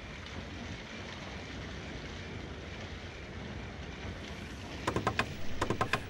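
Steady wind-like ambient noise with a low rumble. About five seconds in come two quick runs of sharp taps: fingers of a leather glove drumming on a table.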